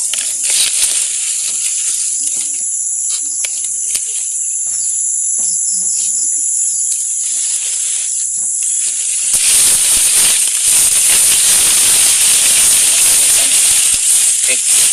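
A steady high-pitched insect chorus. About nine seconds in, a louder, rushing hiss that spans low and high pitches alike joins it and keeps going.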